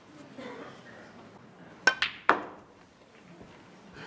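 Snooker shot potting the green: three sharp clicks within about half a second just after the middle, the cue tip striking the cue ball, the cue ball clicking into the green, then a louder knock as the green drops into the pocket.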